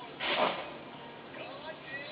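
Muffled voices picked up by a convenience store's security-camera microphone, with one short loud noise about a quarter second in.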